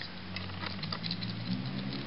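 Faint, scattered light clicks and patter of hands handling plastic Transformers action-figure parts.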